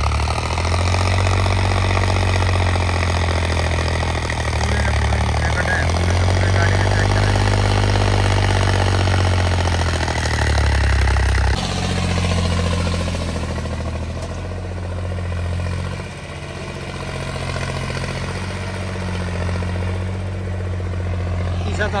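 John Deere tractor's diesel engine running under load while pulling a tine cultivator through ploughed soil. The engine note is steady, then changes abruptly and grows quieter about eleven seconds in.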